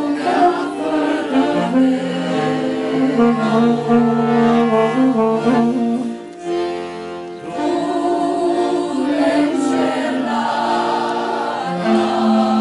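A small group of mourners singing a funeral song together, accompanied by an accordion. The music drops away briefly about halfway through, then the singing and accordion resume.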